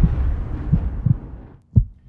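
Low rumble of a cinematic boom sound effect fading away, then a single heavy heartbeat-style thump near the end, the first of a pair.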